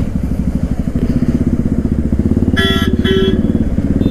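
Yamaha R15's single-cylinder engine running at low speed with a steady pulsing beat, its note rising a little in the first half second. A vehicle horn beeps twice, briefly, near the end.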